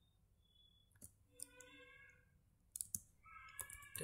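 Faint computer keyboard keystrokes: a handful of separate key clicks scattered through the moment as a short command is typed.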